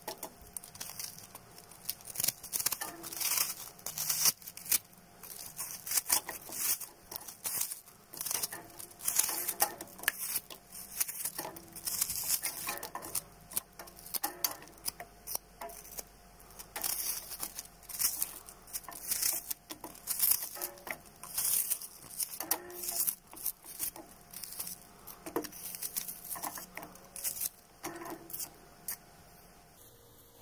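Chopped onion pieces dropped by hand into a stainless steel pot of broth: many small, irregular splashes and clicks, with the odd tap against the pot and whisk.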